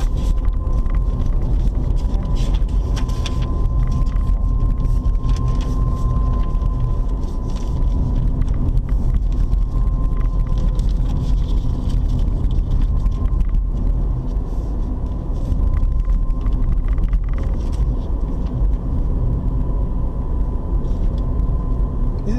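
Car cabin noise while driving: a steady low rumble of engine and tyres on the road, with a thin steady whine over it.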